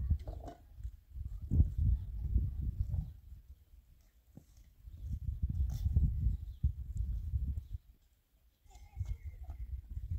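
Wind buffeting the microphone, a low rumble that swells in three gusts.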